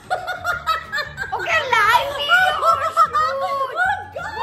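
Two women laughing together: bursts of giggling and snickering, with a few half-spoken words mixed in.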